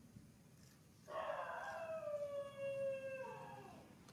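Baby macaque giving one long whining cry, starting about a second in and sliding slowly down in pitch for nearly three seconds.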